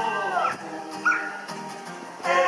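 Acoustic guitar chord ringing in a gap between sung lines. A voice glides downward at the start, and a short high yelp comes about a second in.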